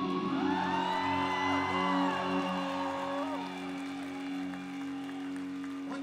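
A live band's amplified instruments hold a steady low chord at the end of a rock song. The crowd whoops and cheers over it during the first three seconds or so.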